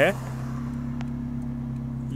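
Toyota Corolla GLI 1.6's four-cylinder engine idling steadily just after a start, its aftermarket electronic exhaust cutout valve fully open, giving a loud exhaust note heard from inside the cabin.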